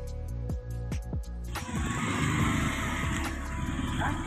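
Background music with a regular beat. About a second and a half in, live street sound cuts in: a motorbike engine running among traffic noise.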